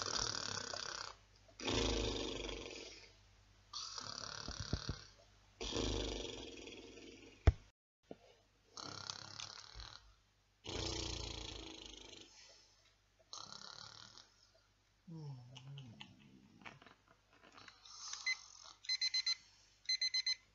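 A man snoring, one noisy breath about every two seconds. Near the end an alarm clock starts beeping in quick repeated tones.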